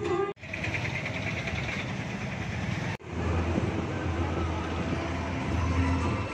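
Busy street noise: traffic rumble with people's voices mixed in, broken twice by sudden edit cuts, about a third of a second in and halfway through.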